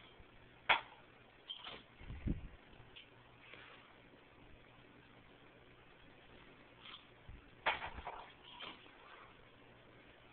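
A beer pong robot's throwing arm firing twice, about seven seconds apart. Each launch is a sharp clack followed by a few lighter clicks and knocks as the ping-pong ball lands and bounces; after the first there is also a low thump.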